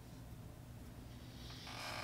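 Quiet room tone with a faint steady low hum, and near the end a person's soft intake of breath just before speaking.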